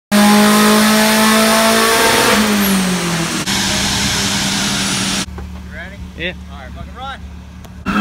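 Turbocharged Mazda Miata engine run hard on a chassis dynamometer, its pitch falling as the revs come down about three seconds in. Loud steady running carries on after a cut, then a little past halfway it drops to a low hum under people's voices.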